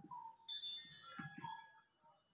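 Whiteboard marker squeaking against the board as it writes: a few short, high-pitched squeaks with faint scratchy strokes.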